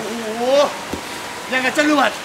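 A voice speaking or calling out in two short phrases, about a second apart, over a faint steady hiss.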